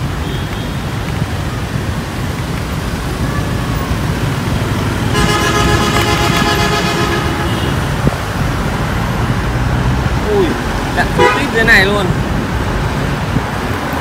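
Street traffic: cars and motorbikes running past, with a vehicle horn sounding once for about two seconds, about five seconds in.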